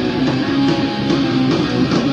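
Punk rock band playing: loud electric guitar with bass and drums in a stretch without vocals.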